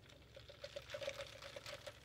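A straw worked in the lid of a plastic iced-latte cup, giving a faint, rapid series of short squeaky, gurgling pulses.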